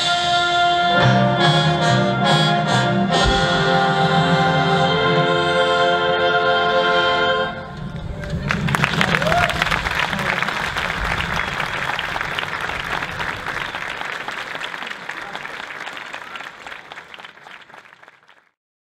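A concert wind band, brass to the fore, plays and holds its closing chord, which stops about seven and a half seconds in. Audience applause follows and fades out near the end.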